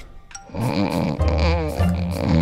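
A person snoring loudly, starting about half a second in, with a wavering, wobbling pitch.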